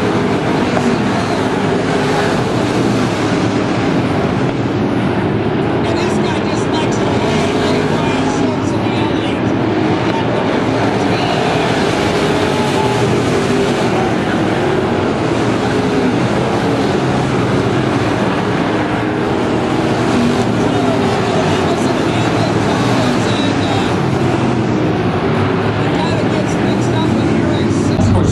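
A field of IMCA dirt-track race cars running laps together on a dirt oval, their engines making a steady, continuous racket that swells and wavers as the pack circulates.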